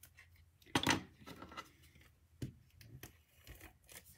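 Cardstock handled and shifted on a wooden tabletop: soft paper rustles and light taps, the loudest about a second in and another about two and a half seconds in.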